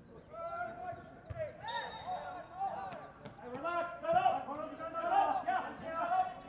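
Players' voices shouting and calling to one another on the pitch during open play, in short bursts that grow louder and more frequent towards the end. A short, high, steady whistle-like tone sounds briefly about two seconds in.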